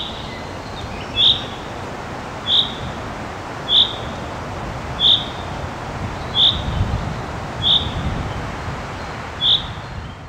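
Common chaffinch calling: one short, high, clipped note repeated eight times, about every second and a quarter, over a steady background hiss.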